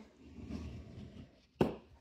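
A bone folder rubbed along the scored fold of a cardstock card base, a soft scraping that burnishes the crease flat, followed by a single sharp tap about one and a half seconds in.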